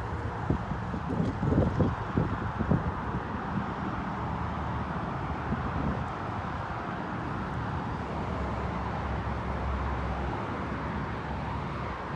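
Outdoor ambience: a steady low rumble of distant road traffic with wind noise on the microphone, and a few soft low thumps in the first few seconds.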